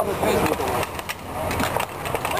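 Inline skate wheels rolling and scraping on a concrete rink floor, with scattered sharp clicks.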